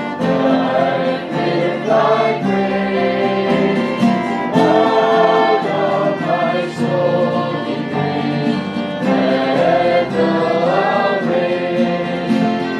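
A man singing a worship song while strumming an acoustic guitar, with other voices singing along.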